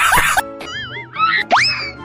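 Cartoon comedy sound effects laid over the picture: a quick run of rising chirps cutting off early on, then a wobbling, warbling tone, then a sharp upward whistle-like slide about one and a half seconds in that sinks slowly away.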